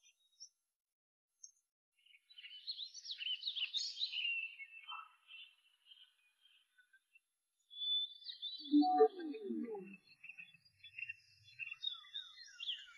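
Small birds chirping in quick, high calls, starting after about two seconds of silence and coming in two spells separated by a short lull. A brief, lower, voice-like sound comes during the second spell.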